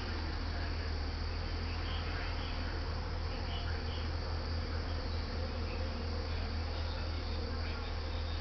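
Steady low hum with a background hiss, with a few faint high chirps around two to four seconds in.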